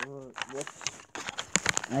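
Handling noise from the camera being picked up and moved: a scatter of soft clicks and rustles.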